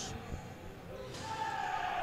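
A basketball being dribbled on a hardwood court, as faint knocks, with a faint drawn-out squeal starting about a second in.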